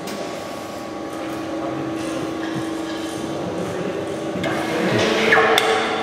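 Workshop background: a steady machine hum with a few knocks, growing louder and noisier near the end.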